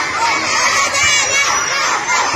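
A large crowd of children shouting and cheering at once, a loud, steady din of many overlapping high voices.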